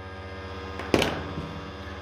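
Steady electrical hum with one sharp click about a second in.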